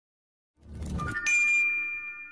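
Logo-reveal sound effect: a rising whoosh starts about half a second in, then a bright bell-like chime strikes just after a second and rings on.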